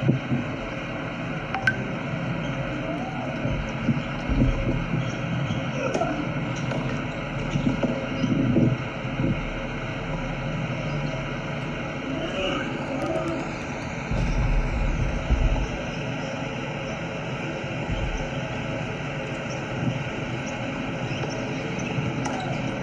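Outdoor tennis court ambience between points: a steady background hum and low rumble with faint distant voices and a few short sharp knocks.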